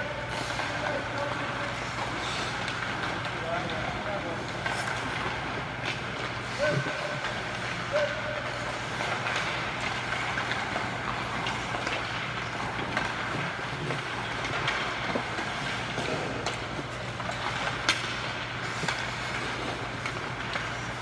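Ice rink during hockey practice: skate blades scraping and carving the ice, with scattered sharp clacks of sticks hitting pucks, the sharpest near the end, over a steady low hum.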